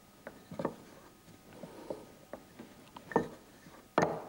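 Wooden rolling pin rolling out a double layer of dough on a floured worktop: a faint rubbing with scattered light knocks of the wood on the counter, a louder knock about three seconds in and a sharp click right at the end.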